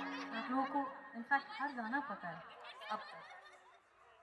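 A held musical chord dies away at the start, then a person laughs and chuckles in short bursts, growing fainter toward the end.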